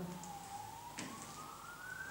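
A faint emergency-vehicle siren wailing, its single tone sliding slowly down and then back up again. A few faint knocks come about a second apart.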